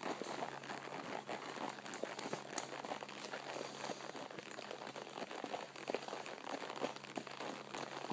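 A horse walking along a dirt trail, heard from the saddle: soft, irregular crunching and rustling of hoof steps and movement.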